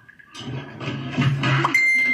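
Indistinct voices begin about half a second in, and a single steady high beep sounds for about half a second near the end.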